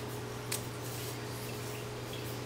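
Steady low electrical hum with a fainter higher tone above it, and a single short click about half a second in.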